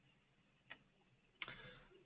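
Near silence: room tone with one faint click less than a second in and a faint short rustle near the end.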